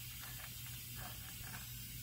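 Faint metallic handling clicks as the 21 mm crankshaft bolt is threaded on by hand, over a steady low hum and hiss.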